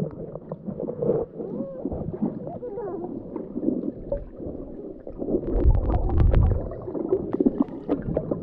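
Muffled underwater sound picked up by a camera held beneath the surface: water movement and gurgling with some warbling, gliding tones and light clicks, and a louder low rumble about five and a half seconds in.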